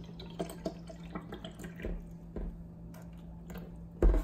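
Water poured from a plastic bottle into clear plastic cups, splashing and trickling in small, irregular splashes.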